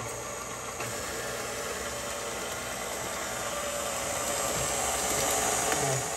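KitchenAid Pro 500 stand mixer running steadily, its flat beater churning a wet mix of eggs, oil and sugar. It starts abruptly, grows slightly louder, and stops at the end.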